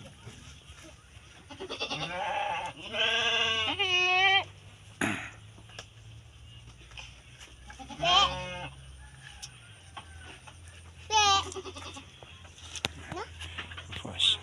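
Goat bleating: a long wavering bleat a couple of seconds in, then two shorter bleats about 8 and 11 seconds in. A single sharp knock about five seconds in.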